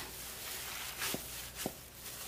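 Soft squishing of a moist flaked-fish mixture being kneaded by hands in thin plastic gloves in a glass bowl, with a couple of faint clicks about a second in and near the end.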